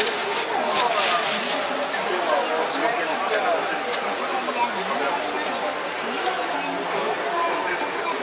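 Steady chatter of many people talking at once in a large, crowded hall, with no single voice standing out.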